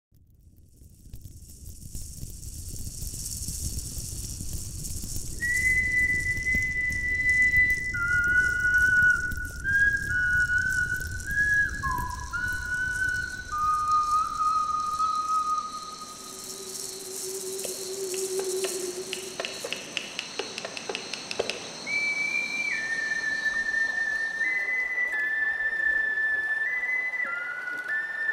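A slow whistle melody of long held single notes, first stepping down in pitch, with one low note midway, then rising again. A soft rushing noise lies under the first half, and a run of rapid clicks comes in the middle.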